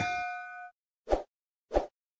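Notification-bell 'ding' sound effect of an animated subscribe end screen, a bell-like chime ringing out and fading within the first second. Two short soft click sounds follow, a little over half a second apart.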